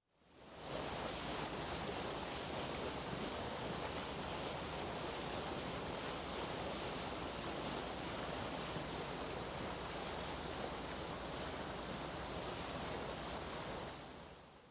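Steady rush of churning sea water, with no separate wave surges, fading in over the first second and fading out at the end.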